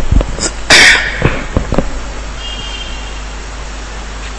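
A person sneezing once, a single loud, sharp burst about three-quarters of a second in, with a few soft knocks before and after it.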